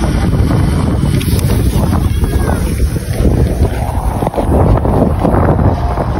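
Wind buffeting a phone's microphone: a steady, loud low rumble with a few light knocks.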